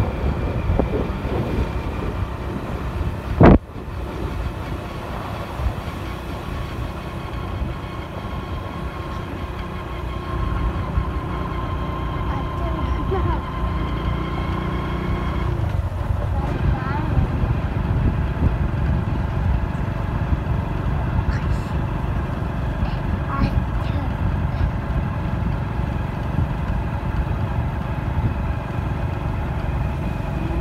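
A vehicle driving along a road, its engine and road noise running steadily. There is a single sharp knock about three and a half seconds in.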